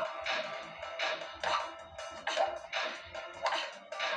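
Background music with a pulsing beat, heard through a television's speaker.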